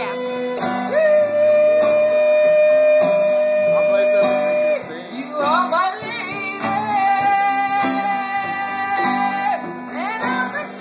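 Man singing wordless long held notes over a strummed acoustic guitar. One long note, then a few quick sliding notes, then a second, higher long note that breaks off shortly before the end.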